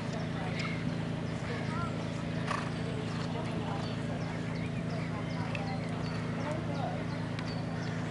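Faint hoofbeats of a horse cantering and jumping on a sand arena, under a steady low background hum.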